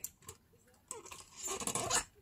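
Light rustling and small clicks of a card tag being handled and positioned in a metal hand punch for eyelets. It starts about a second in and grows louder toward the end.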